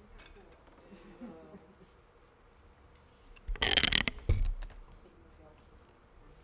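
Handling noise on a desk microphone: a loud rustling scrape of about a second, about three and a half seconds in, ending in a thump. Faint, indistinct voices come before it.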